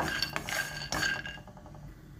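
Wooden spatula stirring dry peanuts in a nonstick kadai, the nuts rattling and clinking against the pan. A few sharp knocks in the first second each leave a brief ring from the pan, then the stirring fades.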